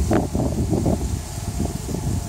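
Wind buffeting the microphone as an uneven low rumble, with faint rustling.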